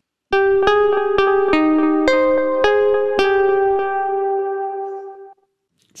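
A short single-line melody played on a keyboard: about eight notes at an unhurried pace, the last note held and left to ring until it dies away about five seconds in. It is a familiar happy Christmas tune played in a minor key, which sounds wrong to the player's ear.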